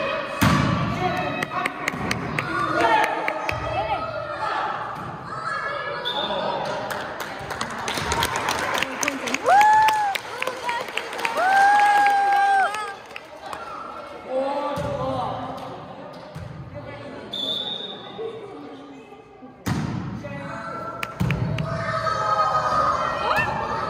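Children's voices chattering and shouting in an echoing gym, with two long drawn-out shouts near the middle. A volleyball is hit and bounces on the hard floor in sharp thuds.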